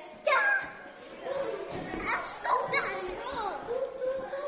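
Children's voices calling out and chattering in a large gym hall, with a loud high-pitched call just after the start and more calls in the second half.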